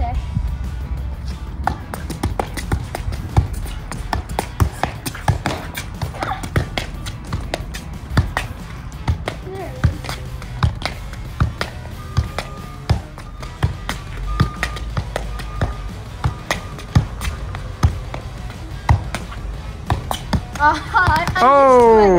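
Soccer ball being kept up with one foot: a run of light thumps of shoe on ball, one to two a second, over background music.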